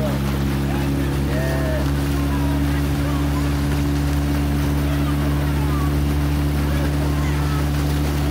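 Outboard motor of a coaching launch running at a steady cruising speed, a low even drone, with water noise along the hull.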